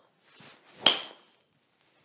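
TaylorMade M1 driver swung at a teed golf ball: a brief swish of the downswing, then one sharp crack at impact just under a second in, with a short ringing tone that dies away quickly.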